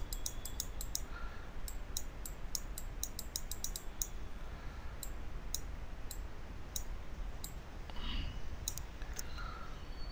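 Computer mouse clicking lightly and irregularly, about two clicks a second and thinning out in the second half, as a brush is dabbed onto a layer mask in Photoshop.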